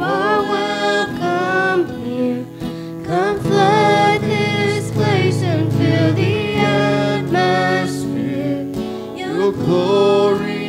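A hymn sung by a man and a girl into microphones, accompanied by an acoustic guitar.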